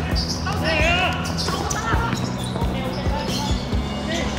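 A football being kicked and bouncing on a hard pitch, several sharp thuds, with players shouting to each other about a second in.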